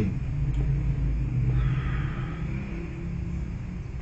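Steady low hum and rumble, with a faint soft sound about two seconds in.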